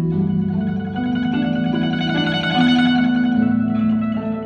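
Guzheng (Chinese zither) playing a slow melody of plucked notes, some held for a second or more.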